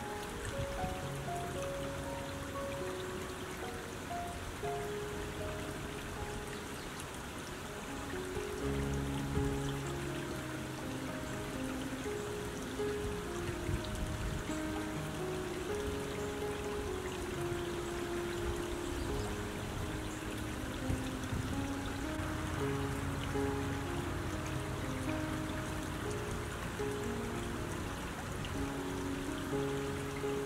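Slow, gentle music of long held notes over the steady sound of a shallow creek running over stones.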